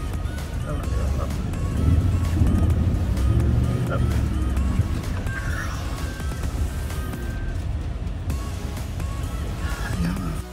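Ram pickup truck driving through deep mud, heard from inside the cab: a heavy low rumble of engine and tyres that swells between about two and four and a half seconds in. Background music plays over it.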